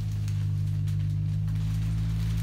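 A steady low-pitched hum that holds unchanged throughout, with no other distinct sound.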